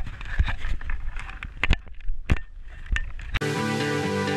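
Wind buffeting the microphone on a sailing catamaran, with irregular slaps and knocks of water against the hull. Near the end it cuts off abruptly into music.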